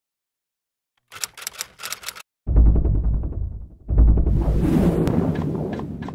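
Intro sound effects: a quick run of typewriter-like clicks, then two loud, deep rumbling hits, the second trailing off in a fading hiss.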